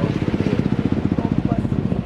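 An engine running with a rapid, even low pulse, with voices in the background.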